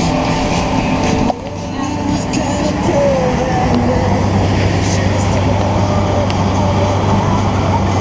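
Wakesurf boat's inboard engine running steadily under the rush of its wake water. Music is playing at first and cuts off suddenly about a second in.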